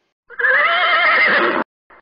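A horse whinnying with a trembling, wavering pitch, loud and about a second and a half long, cutting off abruptly.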